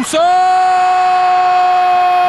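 A football commentator's long, drawn-out goal shout: one loud, steady held note lasting about two seconds as the ball goes in.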